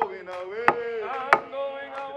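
Two sharp knocks, about two-thirds of a second apart, from a metal hand tool striking the concrete burial vault, over people singing together.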